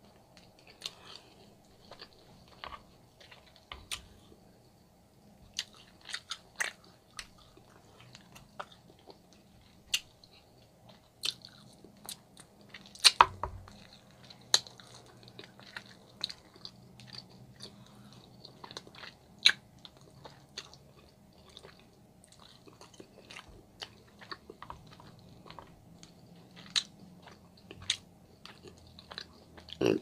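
Close-miked chewing and biting of glazed meat pulled off the bone, with scattered sharp mouth clicks throughout and a louder cluster of bites about 13 seconds in.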